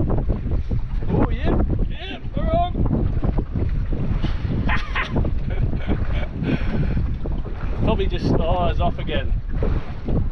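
Wind buffeting the microphone over water sloshing around a small boat at sea, a steady rough rumble throughout. Short wavering pitched sounds come through about two seconds in and again near the end.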